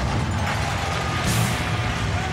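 Steady din of an arena crowd after a fight ends, with a brief hiss about halfway through.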